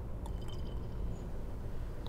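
Prosecco being poured from a bottle into a wine glass: a faint liquid trickle and fizz, with a few light high ticks about half a second in, over a steady low background rumble.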